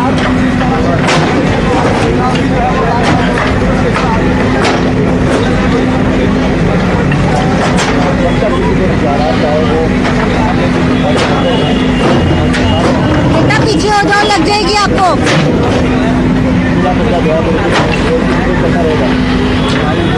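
A backhoe excavator's engine running steadily, with scattered knocks as its bucket digs into soil and rubble, over the voices of an onlooking crowd.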